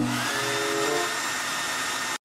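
Hand-held Philips hair dryer running steadily: a constant rush of blown air with a thin, high motor whine.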